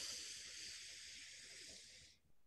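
A person breathing in slowly and deeply through the nose, the first part of a four-count breath. It is a faint, steady hiss of air that slowly fades and stops right at the end.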